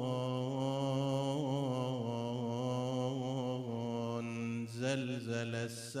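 A man chanting elegiac Arabic verse in a slow, mournful melody through a microphone. He holds one long, slightly wavering note for about four seconds, then moves into the next words near the end.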